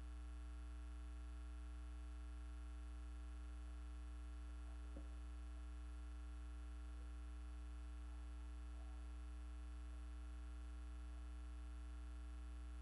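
Steady low electrical mains hum with a stack of faint steady overtones, and a faint tick about five seconds in.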